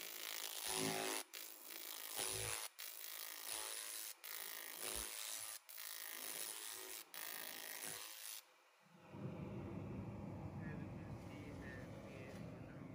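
300 W pulsed laser cleaner ablating paint off an alloy car wheel: a steady crackling hiss, broken by brief gaps about every second and a half. It stops about eight and a half seconds in, leaving a dull low background noise.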